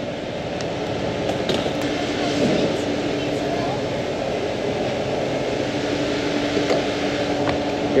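Steady mechanical hum holding one constant low tone over an even wash of background noise.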